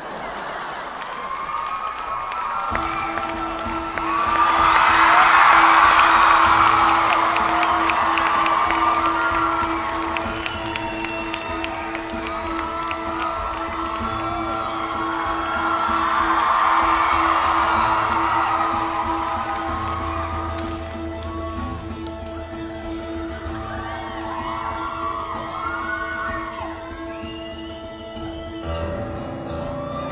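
Concert audience cheering and whooping, loudest a few seconds in and again about two-thirds of the way through. Under it, a steady held instrumental note comes in about three seconds in and holds to the end.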